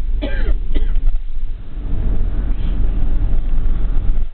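Steady low rumble of road and engine noise inside a moving vehicle, with a person giving a short throat-clearing cough in the first second.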